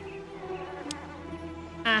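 A housefly buzzing steadily in a film soundtrack, over quiet music, with a single short click a little under a second in.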